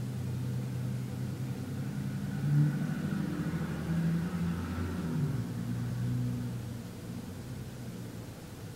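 A motor vehicle's engine hum with a few steady low tones, growing louder in the middle, dropping in pitch a little past halfway, then fading.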